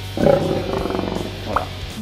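A rough growl lasting about a second, over background music.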